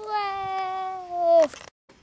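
One long, high vocal cry held on a single note for about a second and a half, sinking slightly in pitch, getting louder near the end and then cutting off abruptly.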